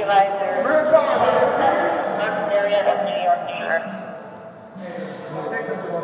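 Indistinct voices of several people talking, with footsteps on a hard floor as officers walk quickly; the voices fade briefly about two-thirds of the way through.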